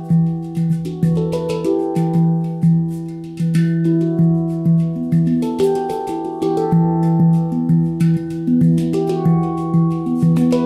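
Ayasa handpan in E Amara tuning played by hand: a flowing run of struck steel notes that ring on, several a second, with a low note returning again and again beneath the higher ones.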